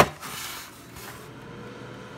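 Bella air fryer's basket pushed back in with a sharp clack, then the fryer's fan running with a steady hum.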